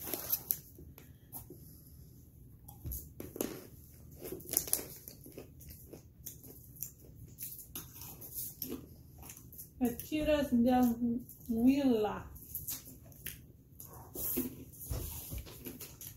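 Light scattered rustles and crunches of a plastic snack bag being handled and crunchy wheat puffs being eaten. A short voice sound, in two parts, comes about ten seconds in and is the loudest thing heard.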